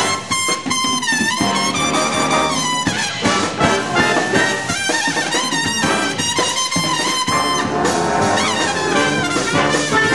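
Big band playing jazz live, with trumpets and trombones to the fore over saxophones and drum kit.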